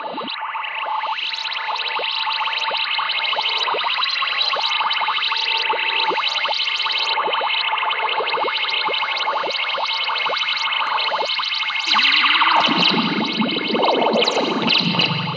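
Experimental instrumental music swelling in: a steady run of sharp, evenly spaced note attacks over held high tones. About twelve seconds in, a lower layer joins and the music gets louder.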